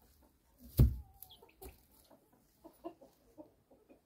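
A dull thump about a second in, then several soft, short clucking calls.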